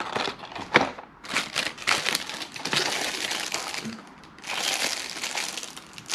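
Clear plastic lure packaging crinkling and crackling as it is handled, in two long stretches, with a sharp click a little before a second in.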